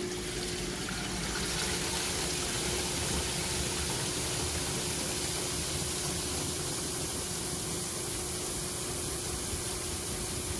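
1960 Kelvinator top-load washer spinning up: the basket speeds up and water rushes and sprays off the load, over a steady motor hum. The rush swells about a second and a half in, then holds.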